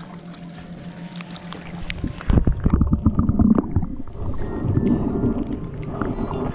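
Water heard through a camera held underwater. About two seconds in, the sound turns muffled, with loud low rumbling and gurgling surges.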